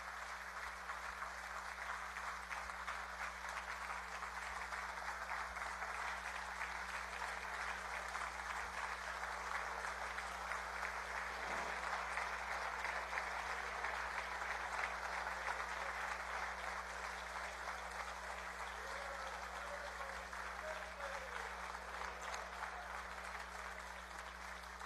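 A large gathering of people applauding steadily, slightly louder around the middle of the stretch, greeting the approval of a law.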